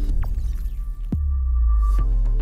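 Logo-intro sound design: a deep bass drone swells, and a fast falling sweep drops into a heavier low boom about a second in. A thin high tone is held over the boom.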